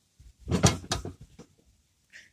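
A hollowed-log wooden planter being handled and set down on a table, giving a few short wooden knocks and clunks about half a second to one second in.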